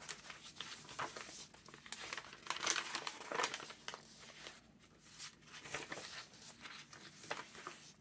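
Coffee-dyed, torn-edged paper pages of a large handmade junk journal rustling and crinkling as they are turned by hand, in uneven bursts that are loudest around three seconds in.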